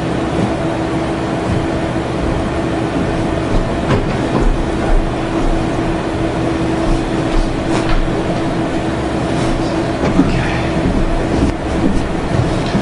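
Steady rumbling room noise with a constant low hum, with a few faint knocks now and then.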